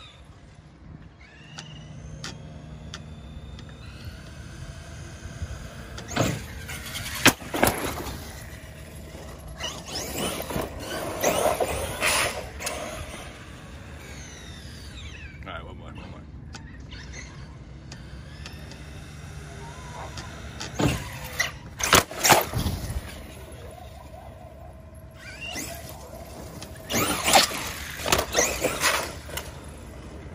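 Traxxas Revo 2.0 RC truck running on the street, its motor whining up in pitch as it accelerates, with several louder stretches as it speeds past on the pavement.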